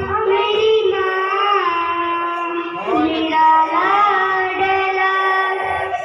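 A young girl singing into a handheld microphone, with long held notes and smooth rises and falls in pitch.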